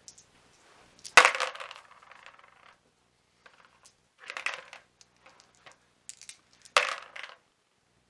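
Handful of six-sided dice thrown into a plastic tub, clattering and rattling to rest. There is one sharp throw about a second in, a softer clatter of dice being handled in the tub around the middle, and a second throw near the end.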